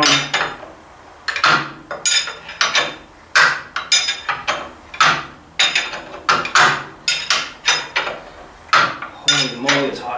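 Steel wrench clinking on a bolt over and over, about two sharp clinks a second, as the bolt is turned down in short swings against a heavy lock washer that needs many extra turns to squash flat.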